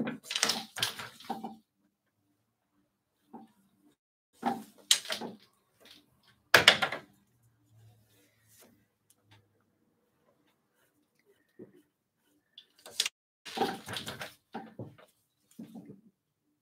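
Wooden clatter from braiding on a takadai: the wooden tama bobbins knocking together and the wooden sword being handled in the threads. It comes in short, irregular bursts with silences between, the sharpest about six and a half seconds in.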